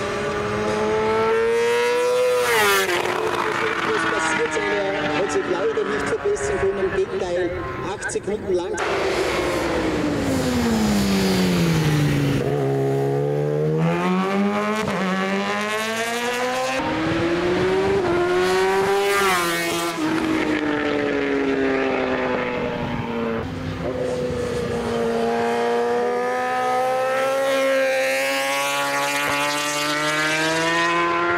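Superstock 1000-class superbike racing at full throttle up a hill-climb course, its engine screaming high and climbing in revs, with sudden drops at upshifts. Midway the pitch falls in one long sweep and then climbs again as the bike brakes for a bend and accelerates away.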